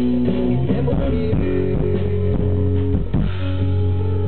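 A live rock band playing through a stage PA: electric guitars, bass guitar and drum kit carrying on steadily as one song.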